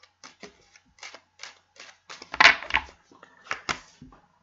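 Tarot cards being hand-shuffled: quick, light clicks of card against card, about three or four a second, with a louder flurry about halfway through. Near the end a card is drawn and laid down on the tabletop.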